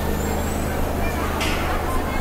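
Crowded shopping-mall ambience: a babble of many voices over a steady low hum, with a brief hiss about one and a half seconds in.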